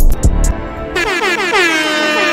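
Hip-hop track intro: a low booming hit fades out with a few sharp clicks, then about halfway in a DJ-style air horn sound effect blares in rapid repeated blasts that drop in pitch.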